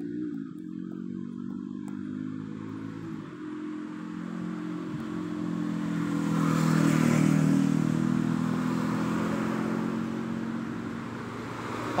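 A motor vehicle engine running steadily, growing louder to a peak about seven seconds in and then easing off a little.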